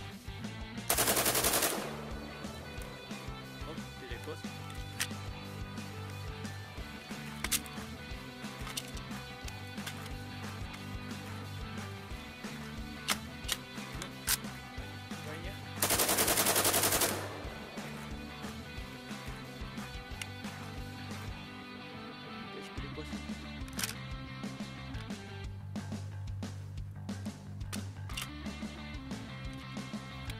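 Blank-firing AKM Kalashnikov with a drum magazine firing blanks on full auto in two short bursts, one about a second in and one about sixteen seconds in, each lasting about a second. Background music with a steady beat plays throughout.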